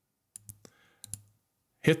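A few short computer mouse clicks spread through the first second or so, made while selecting a module in the software.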